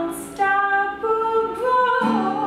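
A woman singing a wordless or drawn-out phrase of held notes that step upward in pitch, opening with a brief sibilant hiss. A softly ringing acoustic guitar sits underneath.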